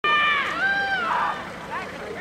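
Women rugby players shouting high-pitched calls to each other on the pitch. There are two long held shouts in the first second, then shorter, quieter calls.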